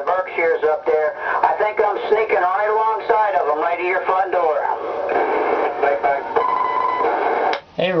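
A man's voice received over a CB radio on channel 28 by skip, coming through the base station's speaker thin and with static. About five seconds in the voice gives way to static hiss with a short steady whistle, then the signal cuts off suddenly near the end.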